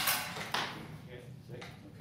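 A power carving tool with a coarse toothed cutter runs up and grabs, a loud rush of noise that peaks suddenly and dies away within about a second. The cutter catching like this is the kickback that makes such toothed cutters dangerous.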